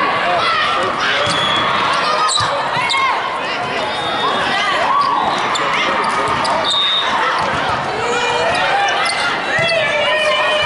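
Indoor volleyball play: court shoes squeaking and the ball being struck, over the voices and calls of players and spectators, echoing in a large hall.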